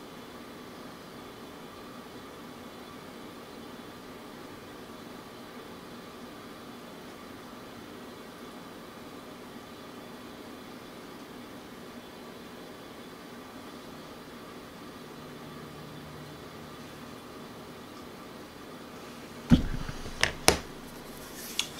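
Steady room hum with no other activity, and a single sharp knock just before the end.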